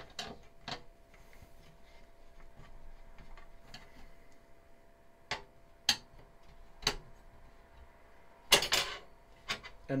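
Scattered sharp clicks and light clatter of a screwdriver and fan mounting hardware being handled inside a PC case while a case fan is unscrewed and moved, with a louder burst of rattling about eight and a half seconds in.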